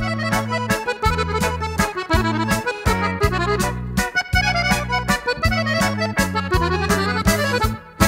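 Accordion playing a lively instrumental mazurka in the Italian liscio dance style over a regular bass-and-chord accompaniment. The music dips briefly at the very end.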